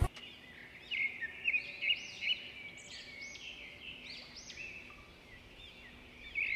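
Small caged parrot chirping and twittering, a quick string of short calls that arch up and down in pitch.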